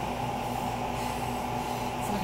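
Steady low room hum with a few constant tones, even throughout, with no footfalls or other distinct events.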